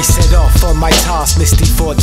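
Hip hop track: a male voice rapping over a beat with deep bass notes and regular hi-hat ticks.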